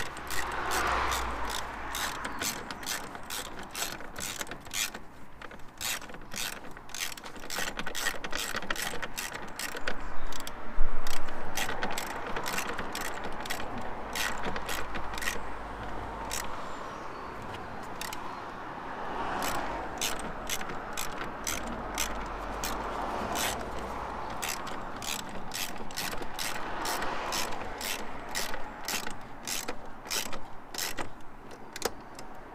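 Socket ratchet clicking in runs of rapid clicks with short pauses as 10 mm bolts are run down and tightened, with a louder clatter about eleven seconds in.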